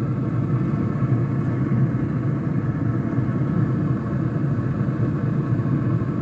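Wind buffeting an unshielded microphone: a steady low rumble that rises and falls unevenly, with a faint steady hum underneath.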